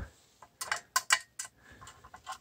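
Hand screwdriver working the Phillips-head screws on a boiler water feeder's sheet-metal valve bracket: a string of irregular light metallic clicks and ticks as the screws are tightened back up.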